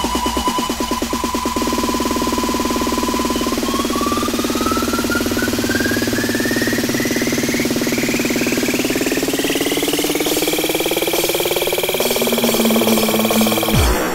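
A 90s acid rave track in a breakdown: the beat drops out early on and a buzzing synth tone holds, then rises steadily in pitch over about ten seconds as a build-up, cutting off abruptly near the end.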